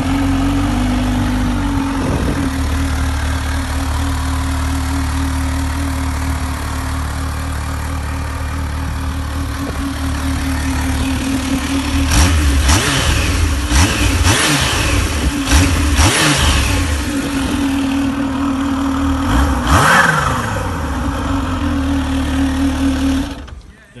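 Kawasaki Z H2's supercharged inline-four idling steadily, then blipped sharply several times about halfway through, the revs dropping back to idle after each blip. The sound cuts off just before the end.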